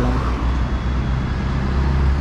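Sport motorcycle engine idling steadily, with road traffic passing close by.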